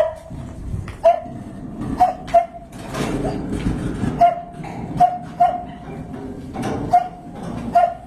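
A small dog barking repeatedly, short high-pitched barks coming about once a second, sometimes two close together.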